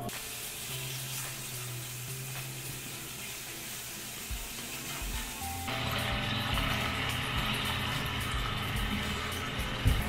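Thinly sliced beef sizzling in a frying pan on an induction hob, the sizzle growing louder and fuller from a little past halfway. Soft background music runs underneath.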